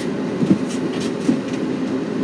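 A steady low mechanical hum, with a few faint clicks over it.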